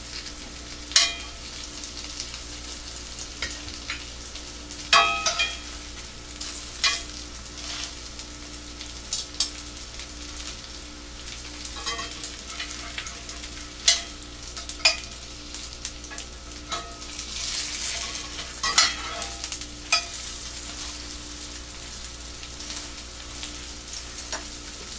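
Cauliflower fritters frying in oil in a skillet, a steady sizzle throughout. A metal utensil clicks and scrapes against the pan about a dozen times as the fritters are worked.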